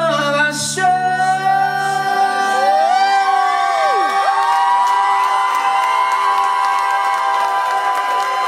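Live band's final held chord ringing out and stopping about two seconds in, while several voices hold long high notes with sliding, wavering pitch and the crowd whoops and cheers.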